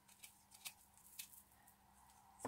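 Near silence: a faint steady room hum with a few soft, faint taps from handling a silicone bath bomb mold.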